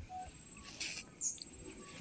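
Faint outdoor ambience: a few short bird chirps, about a second in and again shortly after, over a thin steady high-pitched tone.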